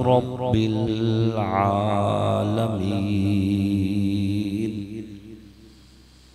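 A man's voice chanting in a slow, drawn-out melodic recitation, amplified through a microphone, holding long notes; the last held note fades out about five seconds in.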